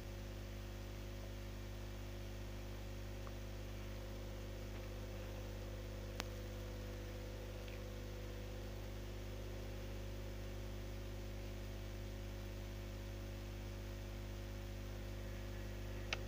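Steady electrical hum with a layer of hiss: the recording's background noise, with no other sound. A single faint click about six seconds in.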